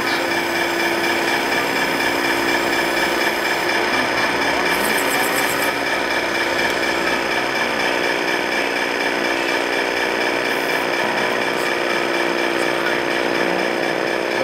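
Steady whine and hum of small electric motors running on radio-controlled model trucks, holding one even pitch throughout.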